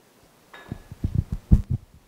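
Microphone handling noise: a quick run of low, dull thumps starting about half a second in, with one sharper knock about one and a half seconds in.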